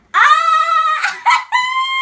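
A woman squealing with delight: two long, high-pitched shrieks, the second higher than the first.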